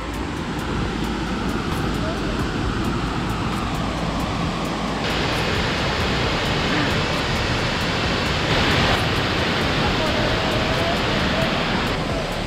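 Steady rushing roar of a large waterfall, with a brighter, hissier edge from about five seconds in.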